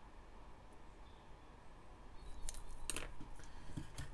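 Quiet room tone with a few faint small clicks and ticks about two and a half to three seconds in, from handling a small brass part while flux is brushed onto it.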